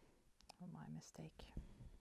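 A woman's soft, half-whispered "yeah", with a faint click just before it.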